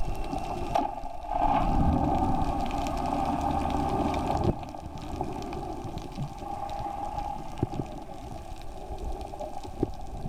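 Muffled underwater noise with bubbling and gurgling, picked up through an underwater camera. It is louder for about three seconds near the start, then settles to a lower steady wash.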